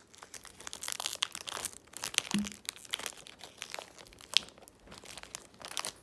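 Foil wrapper of a Pokémon trading card booster pack crinkling and being torn open by hand, an irregular run of crackles with a sharp snap about four seconds in.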